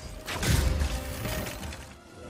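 Film sound effects for a spell being cast: a sudden loud burst about half a second in, with a deep low end and a mechanical, clicking texture, that fades away toward the end.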